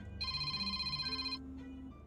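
An electronic ringing trill, a rapid fluttering of high tones like a phone ring, lasting about a second and starting and stopping abruptly. It plays over soft background music.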